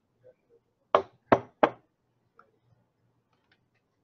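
Three quick, sharp knocks of hard objects being moved on a desk as a glass beaker is picked up, the first about a second in and the other two close behind it.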